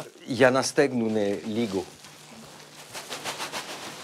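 A voice speaks briefly, then a woven plastic sack rustles and crinkles as freshly picked helichrysum flowers are shaken out of it onto another sack, in a quick run of crisp rustles, about six a second, near the end.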